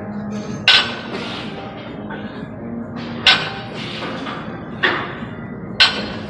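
Barbell loaded with rubber-coated plates touching down on the gym floor with a sharp thud four times, once each rep of a lift from the floor, over steady background music.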